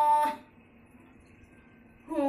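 A woman's long, steady sung note in a Kumaoni nyouli folk song ends about a third of a second in, followed by near silence.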